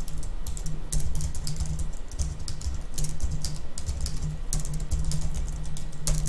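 Computer keyboard typing: a rapid run of keystrokes as pinyin is entered into a Chinese input method, over a steady low hum.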